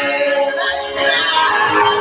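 Music: a man singing sustained notes over backing music.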